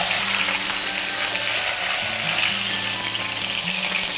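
A whole red snapper frying in hot oil in a wok, a steady sizzling hiss.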